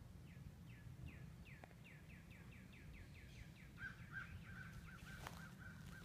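Faint bird song: a series of whistled notes, each sliding down in pitch, repeating and speeding up to about six a second, then changing about four seconds in to a run of shorter, lower notes. A low steady rumble lies underneath.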